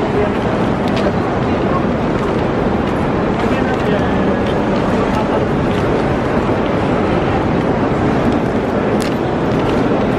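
Loud, steady din of a busy public place: indistinct voices mixed with traffic-like noise, with a few faint clicks.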